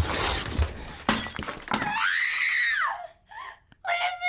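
Music-video soundtrack at a break in the song: a crash like breaking glass, then about two seconds in a single high note that rises and falls away.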